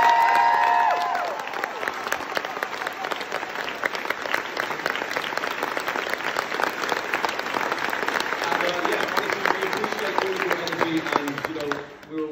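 Theatre audience and cast applauding, dense clapping with a few high cheers in the first second. The clapping thins and stops near the end.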